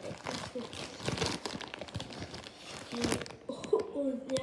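Plastic candy bag of Trolli sour octopus gummies crinkling and crackling as it is handled and opened, with a dense run of quick crackles for about three seconds. A child's voice follows near the end.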